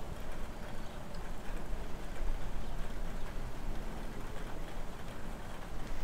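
Steady patter of light rain outdoors, with an uneven low rumble underneath.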